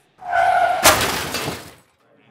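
A crash like breaking glass: a burst of noise that hits hard a little under a second in, then dies away over most of a second.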